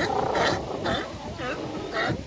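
California sea lions barking: a run of about five loud barks, roughly two a second, with more barking from the crowd layered underneath.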